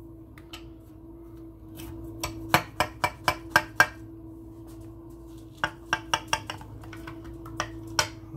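A metal knife clicking against the rim and bottom of a glass baking dish while cutting through a baked cake: a quick run of about seven sharp clicks a few seconds in, then a second cluster and a last click near the end.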